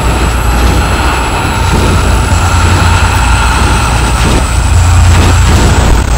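Sci-fi machine sound effect: a loud, steady low hum, with thin high whines that drift slowly down in pitch, accompanying a glowing energy-ray transformation.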